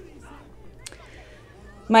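Faint room noise with one short, sharp click about a second in, and a woman's voice starting at the very end.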